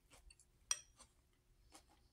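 Metal fork lightly clinking against a ceramic bowl while picking at food: a few faint, short clicks, the sharpest a little before the middle.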